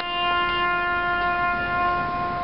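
A trumpet holds one long steady note, the closing note of a ceremonial trumpet call.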